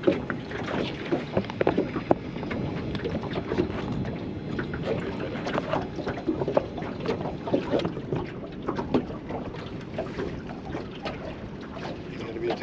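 Small waves lapping and slapping against the hull of a small anchored fishing boat, an irregular run of light knocks over steady water noise, with wind on the microphone.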